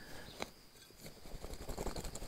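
Steel hand fork digging into soil, faint scraping and crumbling of earth, with one sharp click about half a second in.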